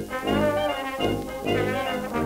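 A 1928 small hot-jazz band recording played from a Columbia 78 rpm record, the ensemble of horns and reeds over a rhythm section, reproduced with no noise reduction.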